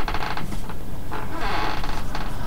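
Handling noise from objects rubbed and moved close to the microphone: two rough scraping, creaking stretches, one at the very start and a longer one past the middle.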